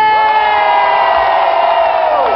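A singer's voice on a microphone through the PA holding one long, high, steady vowel note, with a crowd cheering beneath it.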